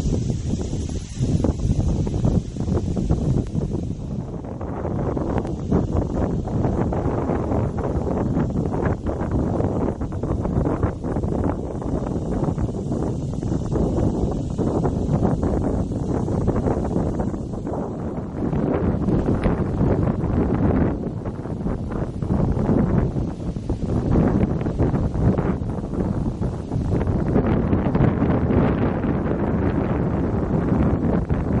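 Wind buffeting the camera microphone: an uneven low rush that swells and dips in gusts.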